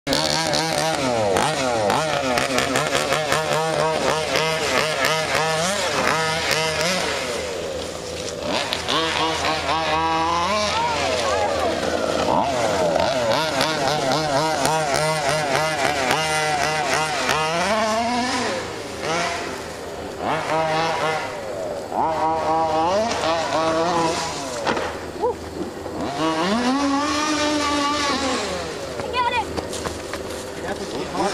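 Two-stroke petrol engine of a large-scale RC car, ticking over at first and then revving up and down over and over as the car is driven around the track.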